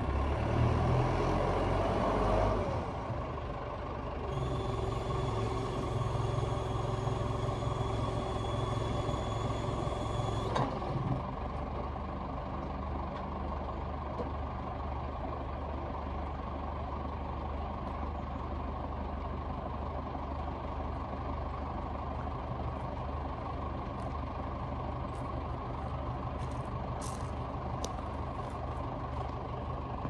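Caterpillar TH63 telehandler's diesel engine running as the machine moves, dropping in pitch in the first couple of seconds. From about four seconds in, a steady high whine rides over it and cuts off abruptly with a click about ten seconds in. The engine then idles steadily.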